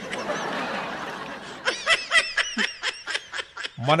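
A person laughing: a breathy stretch, then a quick run of short pitched laughs.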